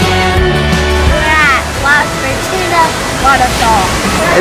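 Background music ends about a second in, giving way to several excited vocal shouts and squeals from a group of people, over the steady rush of a waterfall.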